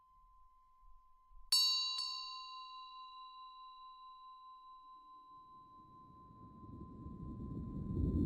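A steady high tone, then a bell-like chime struck twice, about a second and a half in and again half a second later, ringing out and slowly fading. Near the end a low, noisy swell grows louder.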